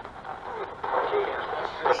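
Handheld spirit-box radio scanning through stations: static hiss that grows louder about a second in, with brief chopped fragments of broadcast voice, one of which is heard as the word "chicken".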